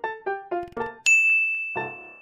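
Background piano music plays a few short notes, then about a second in a single bright bell-like ding sounds and rings away, louder than the music.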